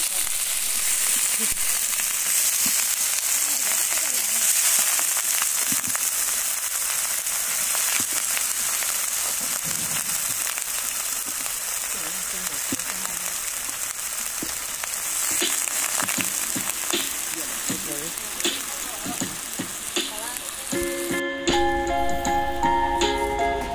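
Chicken pieces sizzling in hot oil in a wok, a steady frying hiss with a few short ticks in the second half. Music comes in about a second before the end.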